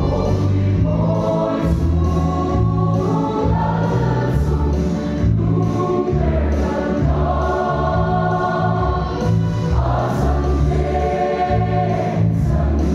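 A large Mizo church choir of men and women singing a hymn together, the chords changing every second or so.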